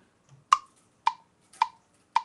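GarageBand metronome count-in on the iPad as recording starts: three short, even clicks just over half a second apart, the first one loudest.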